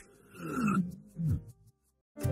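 A short transition sound effect: two brief growl-like pitched sounds, the first about half a second in and the second, falling in pitch, just after a second in.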